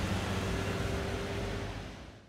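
A car driving along a street: a steady low hum over an even road hiss, fading out near the end.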